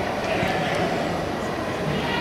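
Steady, echoing background din of a large indoor soccer hall, with faint distant player shouts.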